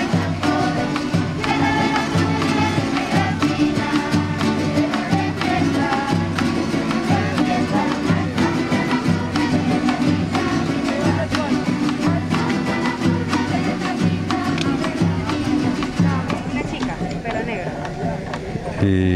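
A live folk ensemble plays an upbeat Latin American tune with strummed small guitars over a steady drum beat.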